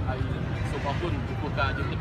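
Speech: a voice talking over a steady low background rumble.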